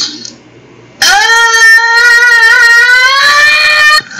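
A young man's single long, loud scream, starting about a second in and held for about three seconds, drifting slightly upward in pitch.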